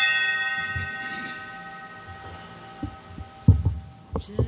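A sustained keyboard chord ringing out and fading over about three seconds, followed by a few low thumps, the loudest near the end.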